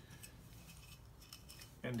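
Faint, light metallic ticks of a piston compression ring being rolled by hand into its groove on an 85 mm piston.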